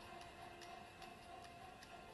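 Faint, even ticking, about two to three ticks a second, over a soft held tone. This is a suspense score playing quietly through a tablet's speaker.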